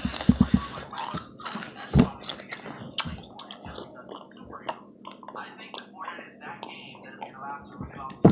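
Close-up chewing and crunching of Takis rolled tortilla chips: a string of short, crisp crunches, loudest in the first two seconds. Then sips from a plastic cup around the middle.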